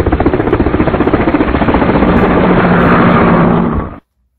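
A loud mechanical rattle, rapid even pulses that blend into a steadier drone, cutting off abruptly near the end.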